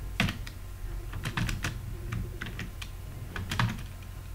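Typing on a computer keyboard: irregular runs of key clicks, with a louder keystroke near the start and another shortly before the end, over a low steady hum.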